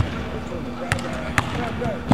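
Basketball dribbled on a hardwood court, three bounces about a second in and soon after, over a faint murmur of voices in a large hall.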